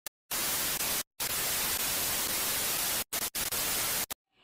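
Steady static hiss, an intro sound effect laid over an old-film-grain picture, cut off by abrupt silent gaps near the start, about a second in, and twice shortly before the end.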